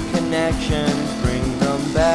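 Instrumental indie rock track: guitar lines, some bending in pitch, over a steady drum beat.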